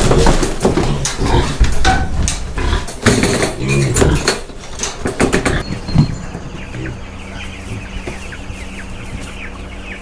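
Piglets being lifted into a plastic carrier crate: repeated knocks and clatter against the crate, with a low pig call about four seconds in. After about six seconds this gives way to a steady low hum and many short bird chirps.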